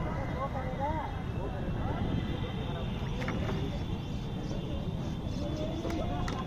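Indistinct voices talking at a distance over a steady low rumble of wind noise.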